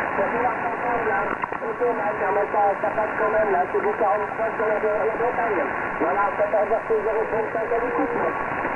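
A distant station's voice received on the 11-metre band through the transceiver's speaker, thin and cut off above about 3 kHz, in a steady hiss of band noise.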